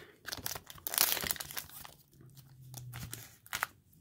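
Foil trading-card pack wrapper being torn open and crinkled by hand, in sharp crackles over the first two seconds, then quieter rustling.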